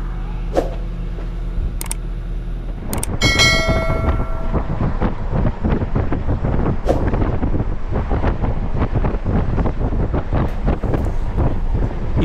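Vehicle in motion: a steady low hum. About three seconds in, a brief ringing tone sounds and the noise turns to a louder, fluttering rumble.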